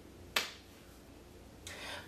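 A single sharp click, like a finger snap or a tongue click, about a third of a second in, then a soft breath in near the end.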